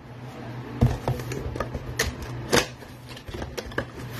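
A cardboard trading-card blaster box being torn open by hand: a run of sharp crackles and snaps as the packaging gives way and the flaps are pulled open, about seven louder cracks spread across the few seconds.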